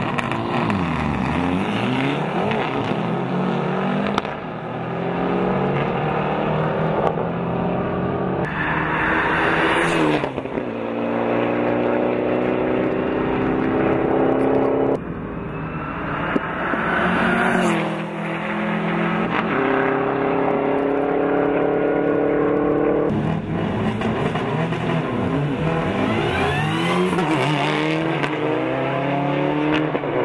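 Rally cars under hard acceleration, engines revving up and dropping back as they shift up through the gears, over and over, with cars passing close by.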